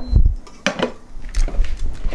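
A large stainless steel pot set down on an induction hob with a low thud, followed by a few light clicks and clatters of kitchenware being handled.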